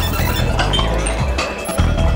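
Club dance music with a steady bass beat, with glassy clinks heard over it.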